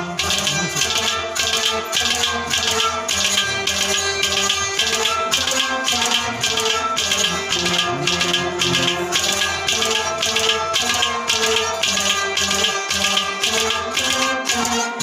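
Instrumental passage of a Kashmiri Sufi song with no singing: held melody notes over a steady rattling percussion beat, about three strokes a second.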